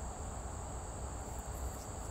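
Steady high-pitched drone of insects such as crickets, over a low background rumble.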